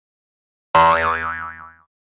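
A cartoon 'boing' sound effect. It starts suddenly about three-quarters of a second in, as a twangy tone whose pitch wobbles rapidly up and down, and fades out within about a second.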